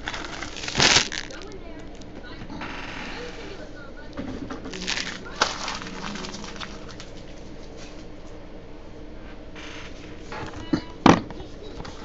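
Foil trading-card pack wrapper crinkling and tearing in a few short rustling bursts. The loudest burst comes about a second in, another around the middle and another near the end.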